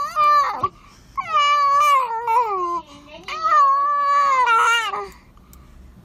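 A small child crying in long, high-pitched wails: one trails off just after the start, then two more of about a second and a half each, falling in pitch at the end.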